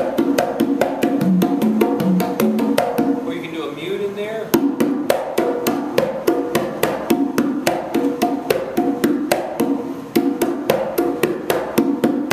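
Conga drum played with bare hands in a fast, even stream of strokes, about six a second, mixing ringing open tones with sharp slaps: a doubles exercise alternating slap and tone.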